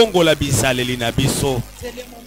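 A man's voice through a microphone and PA in a loud, rhythmic, half-sung preaching delivery with drawn-out held syllables. It breaks off about one and a half seconds in, and quieter talk follows.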